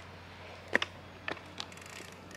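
A few faint clicks and light knocks from a small children's bike as it is held steady and a child sets her feet on its pedals.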